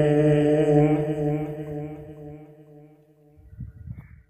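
A man's voice holding one long, steady final note of Quran recitation (tajweed chant), which fades away about two to three seconds in. A faint low rumble follows near the end.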